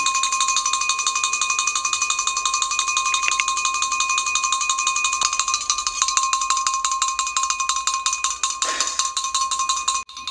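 A continuous, fast metallic ringing rattle: a steady high ring with rapid, even beats running through it. A brief rush of noise comes near the end.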